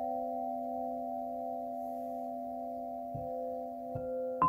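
Several crystal singing bowls ringing together in long, steady tones, a low note beneath a cluster of higher ones. A bowl is struck softly again about three seconds in and once more just before the end.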